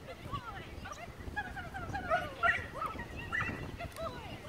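A dog yipping and barking in a rapid string of short, high calls, thickest around the middle.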